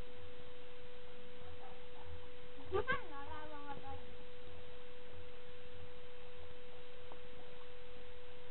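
A steady, thin, high-pitched hum at one pitch. About three seconds in, a single short call slides down and then holds for about a second.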